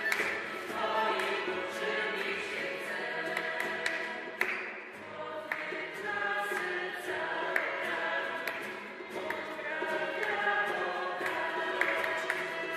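Choir singing a Polish worship song with musical accompaniment, the words changing to a new verse about eight seconds in.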